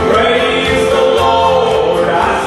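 A man singing into a handheld microphone over a live country band with guitar.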